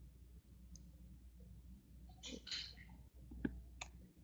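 Faint low hum over an open microphone, with a short rustle a little after two seconds and two sharp clicks near the end.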